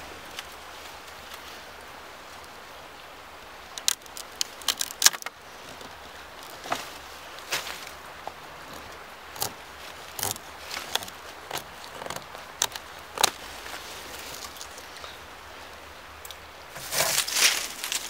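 A green sapling being cut with a knife and handled in the woods: scattered sharp cracks and crackles over a steady outdoor hiss, with a louder burst of rustling from the branch and its leaves near the end.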